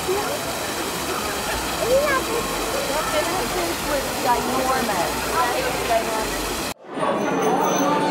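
Small waterfall splashing into a koi pond: a steady rush of water with people's voices over it. It cuts off abruptly near the end, giving way to chatter in a room.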